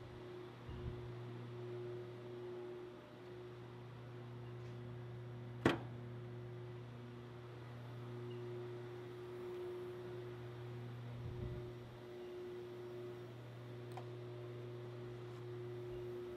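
Steady low hum with a fainter higher tone that fades in and out, and one sharp click about six seconds in.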